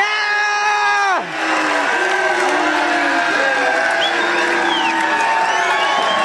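A crowd of students cheering and shouting, led off by one long, loud held yell that drops in pitch as it stops about a second in.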